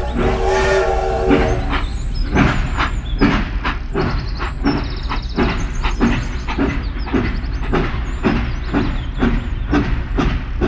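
Toy steam locomotive sounding a whistle for about the first second and a half, then a steady chuffing rhythm of about two to three chuffs a second as it runs round the track.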